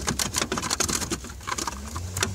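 Old plastic driver information center panel of an early C4 Corvette being wiggled and tugged loose from the dash, giving a rapid, irregular run of clicks and rattles.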